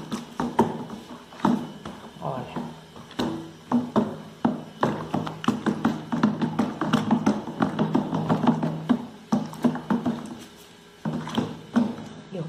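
Wooden stick stirring liquid soap in a plastic bucket, knocking many times against the bucket's sides, over background music.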